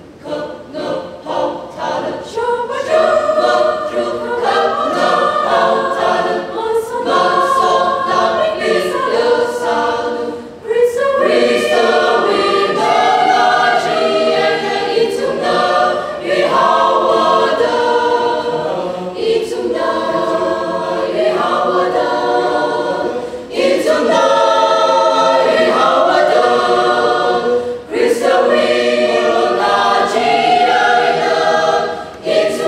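Mixed choir of men's and women's voices singing in parts. It starts soft and swells within the first few seconds, with brief pauses between phrases.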